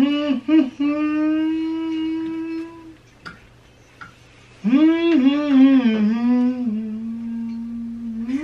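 A person humming the melody of a Christmas song with no words, in long held notes: one phrase, a pause of about a second and a half, then a second phrase that steps down and settles on a long low note.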